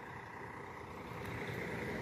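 Faint, steady rumble of a distant vehicle engine running, with a little outdoor background noise, growing slightly louder toward the end.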